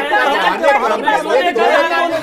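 Several people talking over one another at once: overlapping, unintelligible crosstalk among debaters.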